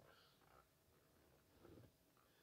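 Near silence: room tone, with one faint, brief soft sound near the end.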